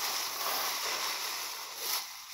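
Dry thatching grass rustling steadily as a bundle of cut stalks is gathered and handled.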